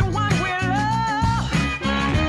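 Background music: a song with a singing voice holding and gliding between notes over a low bass line.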